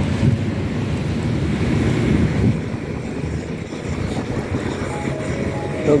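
Wind buffeting a phone microphone outdoors: an uneven low rumble with no clear tone.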